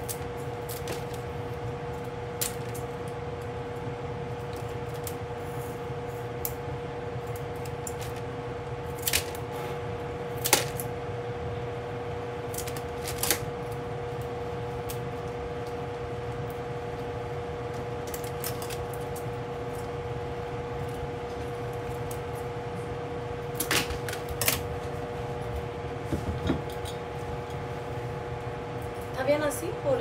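Sharp clicks and snips as fresh flower stems are cut shorter and handled by hand, a few single ones and then a quick cluster near the end. A steady hum runs underneath.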